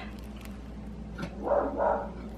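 Dogs barking: two short barks about a second and a half in.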